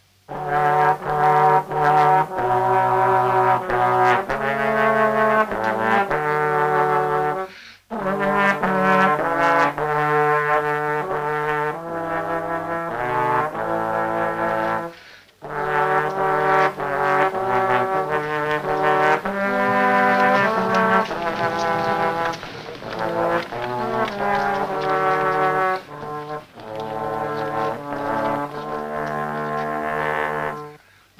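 Two trombones playing a slow hymn tune together in held notes, in phrases with brief breaks about 8 and 15 seconds in.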